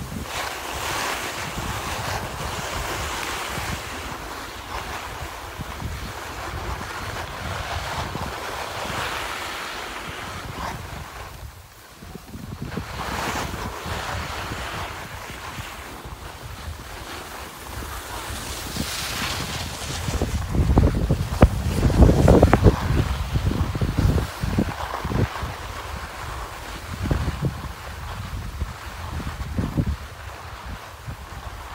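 Skis hissing and scraping over packed snow during a run, with wind buffeting the phone's microphone. The buffeting is loudest about two-thirds of the way through.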